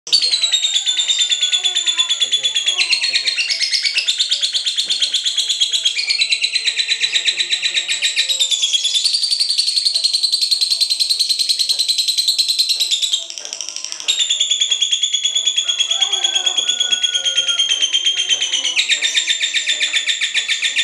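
Lovebird of the Cinderella colour mutation giving a long ngekek: a continuous, very rapid, high-pitched chattering trill that shifts pitch in several stretches, with one brief pause about 13 seconds in. This is the lovebird's prolonged ngekek song, prized as a master recording for training other birds.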